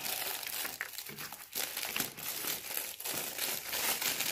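Clear plastic gift wrapping crinkling in irregular crackles as it is handled around a small container.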